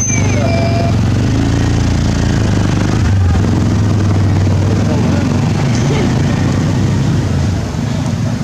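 An engine running steadily at idle, a low, even hum that holds at one level throughout.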